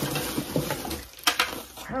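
Rustling and handling noise as a small cardboard box is picked up and moved, with a short knock about a second and a quarter in.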